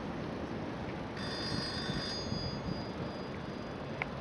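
A brief high-pitched ring of several clear tones that starts suddenly about a second in and lasts about a second, with one tone fading out more slowly. It sounds over steady outdoor background noise.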